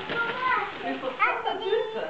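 Overlapping chatter of young children's voices, with some adult voices, in excited, high-pitched talk.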